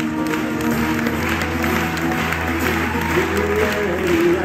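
Audience applauding over acoustic guitar playing.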